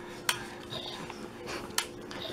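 Two sharp clicks about a second and a half apart, over a steady low hum.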